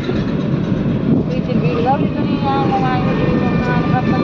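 Steady low road and engine noise inside the cabin of a moving car, with faint voice-like pitched sounds over it in the second half.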